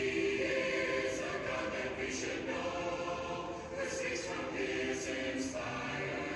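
A congregation singing a hymn a cappella, several voices together holding notes with no instruments.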